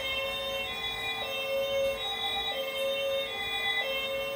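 Electronic two-tone siren from a battery-powered toy vehicle, switching back and forth between a lower and a higher note about every second over a steady tone.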